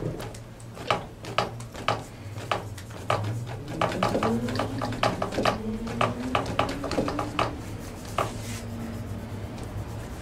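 Bristle brush dabbing oil paint onto a stretched canvas on an easel: a run of irregular soft taps, several a second. A faint wavering tone sits underneath through the middle.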